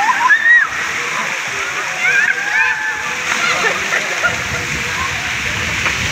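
Water pouring and splashing steadily from a water-park play structure's umbrella fountain and sprays. High-pitched children's voices call out over it, loudest about half a second in and again around two seconds in.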